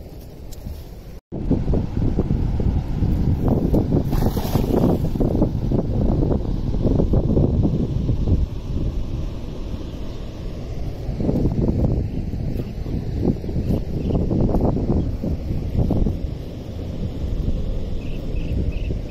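Wind buffeting the microphone: a loud, gusting low rumble that sets in after a momentary drop-out about a second in.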